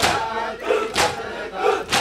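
Crowd of men performing matam, beating their chests in unison: three loud, sharp strikes about one a second, with chanting voices between the beats.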